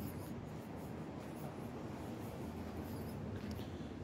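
Urban street ambience at night: a steady low city hum, with a few faint, short, high squeaky chirps now and then.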